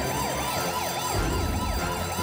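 Rescue station alarm siren wailing in quick, even rises and falls, about three a second, sounding the call-out for the rescue team. A low rumble comes in about halfway through.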